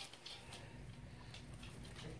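Guinea pigs moving about in hay and wood-shaving bedding: faint scattered rustles and ticks over a low steady hum.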